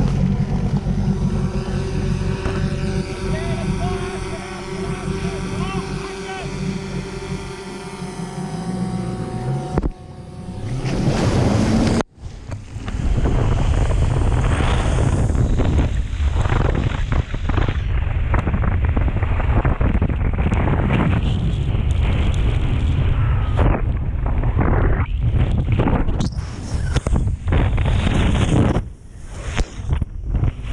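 A ski boat's engine running slowly close by, a steady low hum. About twelve seconds in, there is a break, and then wind and water spray rush loudly over the camera microphone as the skier is towed at speed behind the boat.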